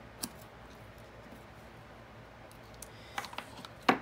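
Craft snips cutting through organdy ribbon: one short, sharp snip about a quarter second in, then a few faint clicks near the end as the scissors are handled and set down.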